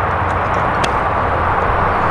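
A sand wedge striking a golf ball off a tee mat: a single sharp click a little under a second in, over a steady background rumble.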